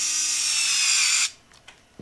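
Small cordless electric screwdriver whining as it drives a clamp screw into a nylon AirTag mount, its pitch sagging slightly as the screw tightens. It stops about a second and a quarter in, followed by a few faint clicks.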